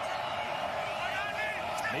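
Steady broadcast field-mic stadium ambience, with a few faint distant shouts in the second half.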